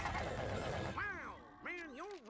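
Cartoon soundtrack: a dense mix of fire and destruction effects with music for about the first second. Then a character's voice with big swoops in pitch, sing-song or laughing, without clear words.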